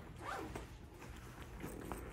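Zipper on a child's fabric school backpack being pulled, in two short strokes: one just after the start and one near the end.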